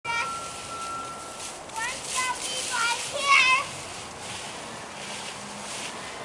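High young children's voices: a long held note, then a run of short sliding calls in the middle, the loudest part. Under them, the rustle and scrape of dry fallen leaves as small plastic toy rakes drag through them.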